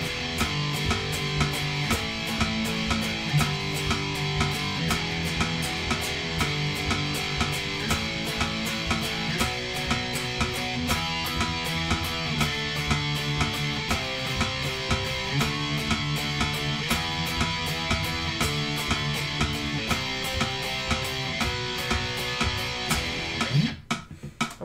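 Electric guitar playing power-chord riffs in a steady rhythm, over a playback drum track that marks the beat. The playing stops abruptly near the end.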